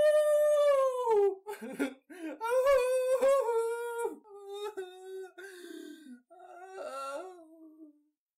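A man's voice wailing and whimpering in long, pitched cries of torment. The first cry is the loudest and falls in pitch, followed after a short gap by a sustained one and then quieter, wavering whimpers.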